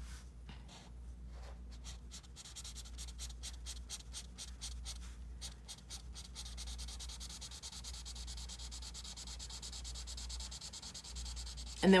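A felt-tip marker (Crayola Super Tips) scratching across paper in quick short back-and-forth strokes as an area is coloured in. Partway through it turns into a steadier, continuous rubbing.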